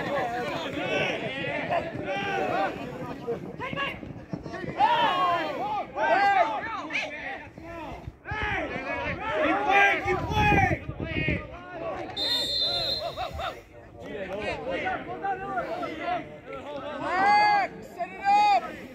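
Voices of football players and coaches calling out across the pitch throughout. About twelve seconds in, a referee's whistle gives one high, steady blast of about a second and a half.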